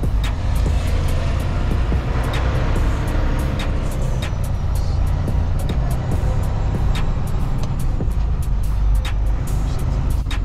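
Semi truck heard from inside its cab while driving slowly: a steady low engine and road rumble, with frequent irregular sharp clicks and ticks over it.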